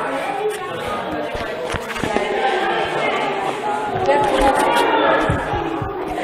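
Indistinct voices and chatter echoing in an indoor hall, with a few light knocks.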